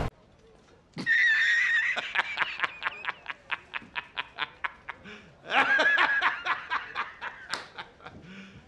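A man laughing hard in quick repeated "ha" pulses. The laughter starts about a second in with a high drawn-out note and fades away, then breaks out loudly again at around five and a half seconds before trailing off.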